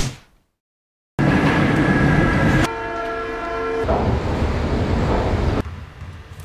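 After about a second of silence, a loud rumbling vehicle noise starts suddenly. A steady horn-like tone sounds over it for about a second partway through, and the noise drops away near the end.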